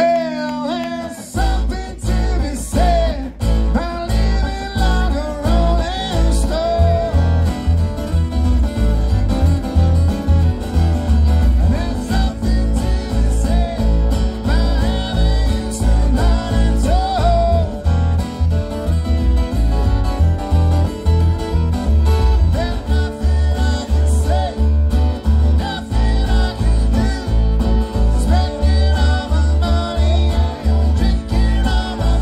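Live jamgrass band playing an acoustic tune on fiddle, two acoustic guitars and upright bass, the bass coming in with a steady pulse about a second in.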